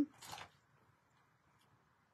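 A brief soft rustle at the very start, then near silence: room tone.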